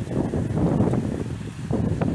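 Wind buffeting the microphone: a steady low rumble that dips briefly about one and a half seconds in.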